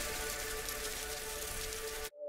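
Steady hiss with a faint, even hum underneath, starting and stopping abruptly: the background noise of a silent camera recording.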